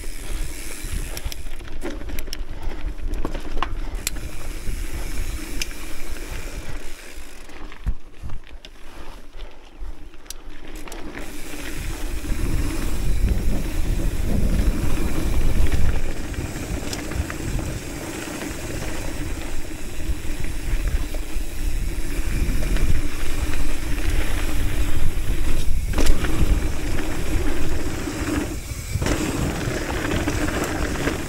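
Hardtail mountain bike rolling fast down loose rocky dirt: tyre crunch and rumble with scattered sharp clicks and rattles from the bike, getting louder about twelve seconds in as the descent speeds up.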